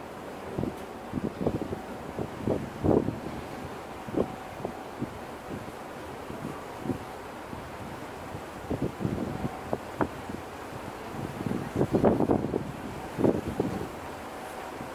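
Wind buffeting the microphone in irregular gusts, the strongest coming about twelve seconds in, over the steady background noise of a coastal ship under way.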